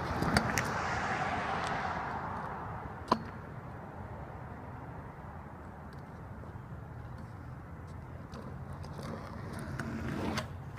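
Kick scooter wheels rolling on concrete past the camera with a few clacks, the rolling fading away over about two seconds as the rider pushes off, then a single sharp click about three seconds in. A faint steady low hum fills the rest.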